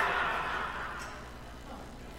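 Audience laughing, the laughter dying away over about the first second.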